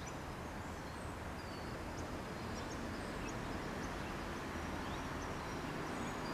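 Steady outdoor background noise, a low rumble with hiss, and a few faint short high chirps scattered through it.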